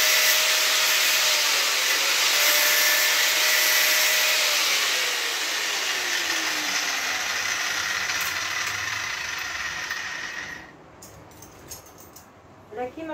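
Angle grinder with a cutting disc running loud and cutting through the steel spokes of a bicycle wheel to free the hub. Its motor note drops in pitch partway through. The grinding stops about a second and a half before the end.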